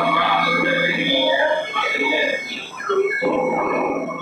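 Live noise music: squealing, warbling electronic sounds and voice-like cries over a low droning hum, which drops out about a second in and comes back after about three seconds.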